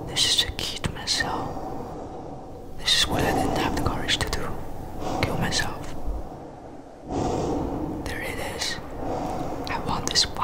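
Whispered speech: a voice whispering several short phrases with brief pauses between them.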